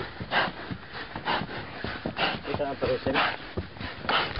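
A horse breathing hard, huffing and puffing with a loud breath about once a second, from the effort of carrying a rider up a steep trail.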